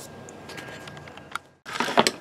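Faint background noise with a few light clicks and taps from handling, then a brief cut-out to silence just past halfway before the noise returns.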